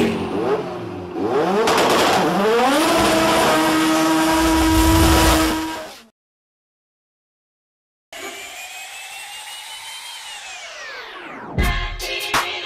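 Car engine revving up, holding a high steady note, then cutting off suddenly about six seconds in. After two seconds of silence, a high whine sweeps steeply down in pitch, and music starts just before the end.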